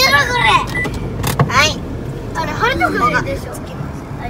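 Voices inside a car cabin, one of them high-pitched, in short snatches over a low steady hum.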